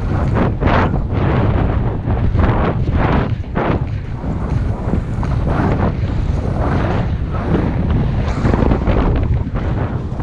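Wind rumbling on the microphone of a skier moving downhill, with irregular swells of hiss and scrape from skis turning on packed, groomed snow.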